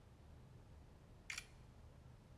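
A smartphone camera's shutter sound: a single short click a little over a second in, as a selfie is taken. Otherwise faint room tone.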